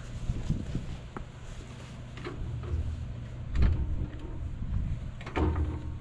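A few dull knocks and a brief rattle over a steady low wind rumble on the microphone.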